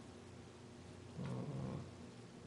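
A man's short hesitation sound, 'uh', into a podium microphone about a second in. Quiet room tone before and after it.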